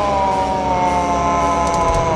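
Logo sting sound effect: one long held tone, sliding slightly down in pitch, over a low rumble.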